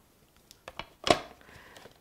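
A few light clicks, then one sharp knock about a second in, as a painted flat panel is set down into a wooden floater frame and settled into place.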